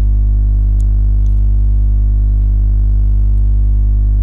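Steady, loud low electrical hum with a stack of evenly spaced overtones, unchanging in pitch and level.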